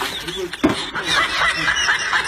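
Laughter in short, choppy snickering bursts, with one sharp knock a little over half a second in.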